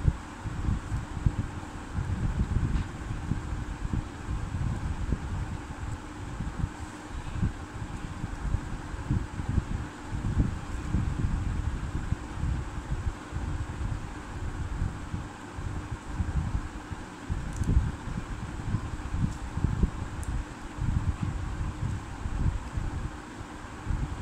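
Room fan running, its air buffeting the microphone: a steady, fluttering low rumble with a faint steady hum beneath it.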